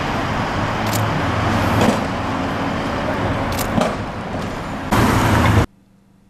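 Road traffic on a busy city street: vehicles passing with a low engine hum and a few sharp knocks. The sound is loudest near the end, then cuts off abruptly.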